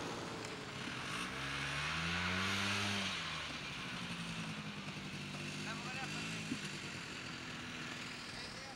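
Snowmobile passing close by: its engine note climbs to a peak about two and a half seconds in, with a loud hiss over it, then drops away. A steadier, lower engine hum follows as it carries on.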